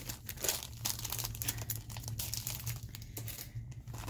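Clear plastic packaging crinkling and rustling as packets of metal cutting dies are handled and sorted through, a dense run of irregular crackles.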